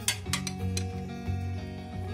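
Background music with a few light metallic clinks of a steel ring spanner being fitted onto a motorcycle's rear axle nut, the sharpest just after the start.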